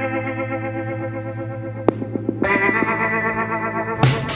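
Background music: sustained, slightly wavering chords on an effects-laden instrument, with a new chord coming in about halfway through.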